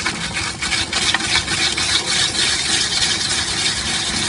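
Ice-shaving machine grinding a block of ice into crushed ice for gola: a steady scraping made of rapid fine strokes, with a faint motor hum beneath.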